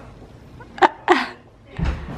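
Two short, sharp bursts of a person's voice a little under a second in, a quarter second apart, then a dull low thump near the end.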